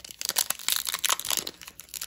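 Pokémon card booster pack's foil wrapper crinkling as fingers work it and tear it open, a quick run of crackles throughout.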